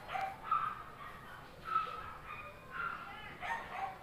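A dog whimpering and yipping in a series of short, high whines, fairly faint.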